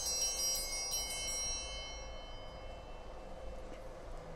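Altar bells rung at the consecration of the chalice: a few strokes in the first second, their high ringing tones then fading away over the next couple of seconds.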